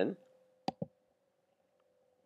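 A computer mouse button clicked once, a quick press-and-release pair of clicks a little under a second in.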